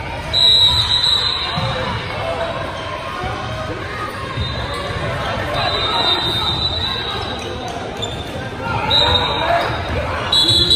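Basketball dribbling on a hardwood gym floor, with voices echoing in a large hall. A thin high tone sounds a few times, the first and loudest just after the start.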